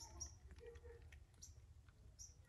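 Near silence, with a few faint, short high-pitched chirps.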